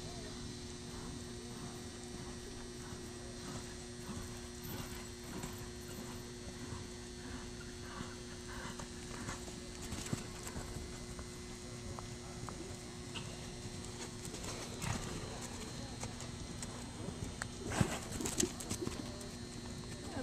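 Hoofbeats of several ridden horses moving at trot and canter on the soft dirt footing of an indoor show arena, over a steady low hum. A few louder hoof knocks come near the end.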